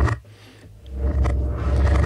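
A deep, bass-heavy kick-drum loop played backwards from a software sampler, swelling up about a second in.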